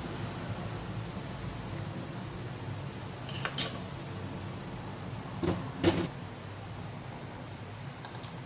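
A few knocks of kitchenware on the countertop, a glass mixing bowl and whisk being put down, over a steady low hum: a light knock about three and a half seconds in, then a louder pair of knocks near six seconds.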